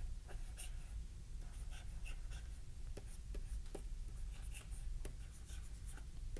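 Faint, irregular taps and scratches of a stylus writing by hand, over a low steady hum.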